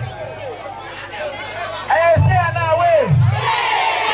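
A crowd chattering, then about two seconds in a man gives two drawn-out calls over a microphone, and the crowd's shouting and cheering swells near the end.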